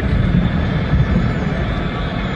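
Stadium crowd noise from a football broadcast: a dense, steady crowd sound with no single event standing out, just after a free kick strikes the crossbar.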